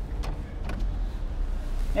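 Low, steady engine and road rumble heard inside the cabin of a small Chery car creeping along at low speed, with a few faint clicks.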